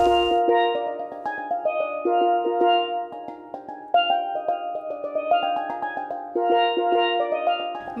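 Steel pans playing a quick melody over chords, many notes struck in rapid succession, all in the middle and high register.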